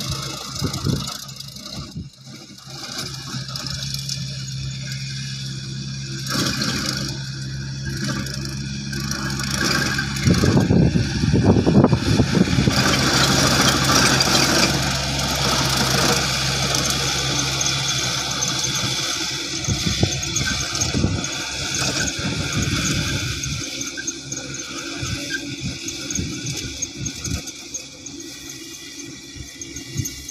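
Compact farm tractor engine running steadily under load as it pulls a tillage implement through a grassy field. It grows louder as it passes close by about halfway through, then fades as it moves away.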